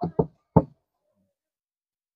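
Three short knocks in quick succession, the last a little apart from the first two.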